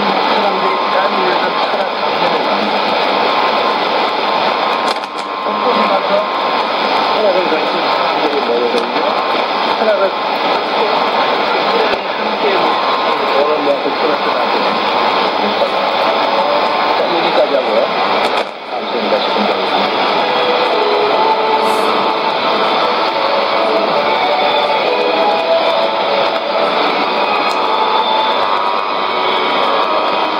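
Korean-language speech from the Voice of Wilderness shortwave AM broadcast on 7375 kHz, heard through a Sony ICF-2001D receiver's speaker over steady static. The signal fades out briefly twice, about five seconds in and again near eighteen seconds.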